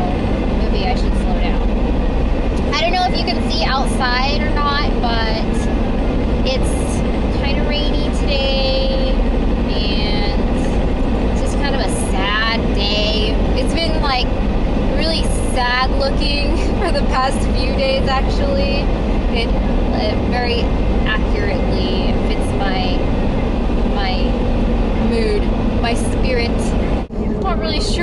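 A woman's voice inside a moving car, over the car's steady road and engine noise. The sound drops out briefly near the end.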